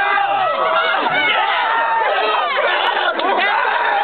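Several people talking over one another at once: a steady, dense babble of voices, with no single speaker clear.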